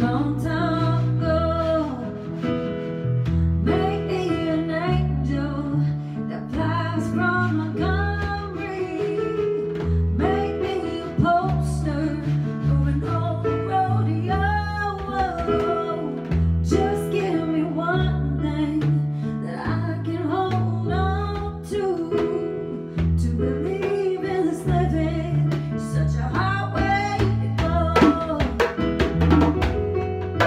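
Woman singing a slow ballad melody into a microphone, accompanied by held chords on an electric keyboard and steady hand strokes on a djembe.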